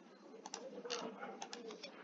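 Faint cooing of a bird in the background, a low wavering call, with a few short clicks over it.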